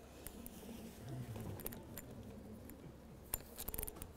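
Rummaging through a bag on the floor: faint rustling and handling noise, with a quick cluster of clicks and knocks near the end.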